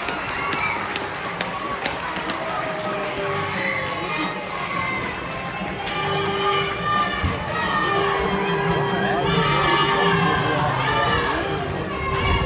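Crowd of football spectators cheering and shouting after a goal, many voices overlapping, with some sung or held notes rising out of it.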